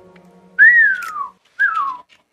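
Someone whistling two falling notes: a longer one about half a second in, then a shorter one near the end.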